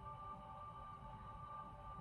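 Faint ambient background music: a steady drone of held tones with no beat.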